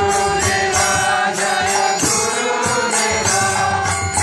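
A man's voice singing a slow devotional chant into a microphone, with a jingling percussion keeping time.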